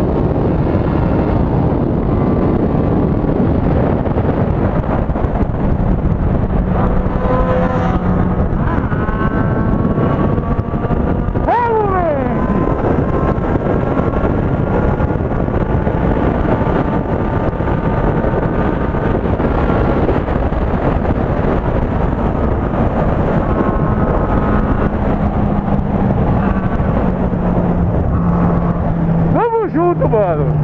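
Honda Hornet 600's inline-four engine running at high speed, largely buried under loud wind rush over the camera microphone. A short falling whine comes about twelve seconds in, and the engine note drops slowly near the end as the bike slows.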